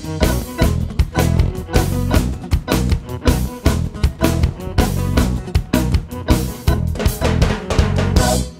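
Instrumental passage of a band recording with no singing: a drum kit plays a busy, steady beat over bass and guitar.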